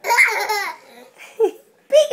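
Small children laughing: a high, bright burst of laughter in the first second, then a short second laugh about a second and a half in.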